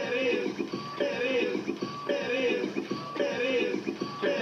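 Electronic music played from a DJ setup, with a short processed vocal phrase repeating about once a second over the beat.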